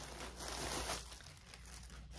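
Clear plastic bag crinkling as a braid of wool roving is pulled out of it. The rustle is loudest in the first second, then fades.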